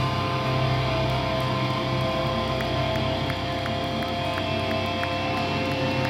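Stage amplifiers humming with steady held tones ringing on through the PA between songs at a hardcore show, with faint even ticking of about three a second in the middle.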